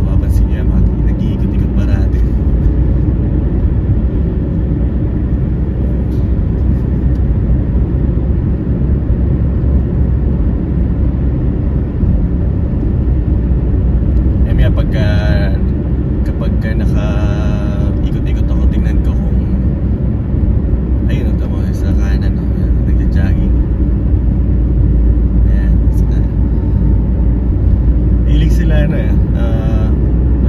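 Car cabin noise while driving on a city street: a steady low rumble of engine and tyres on the road, heard from inside the car.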